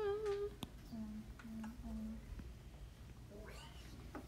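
A woman's voice: a drawn-out "ooh" held on one pitch, a sharp click, then three short hummed notes on the same low pitch, and another brief rising vocal sound near the end.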